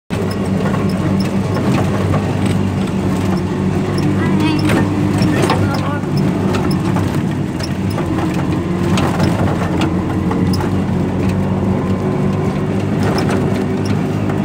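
Auto-rickshaw engine running steadily as the three-wheeler drives, heard from inside its open cabin, with scattered clicks and knocks over the drone.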